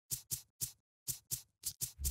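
Seven short, faint scratchy clicks, like scissor snips, unevenly spaced with a pause near the middle.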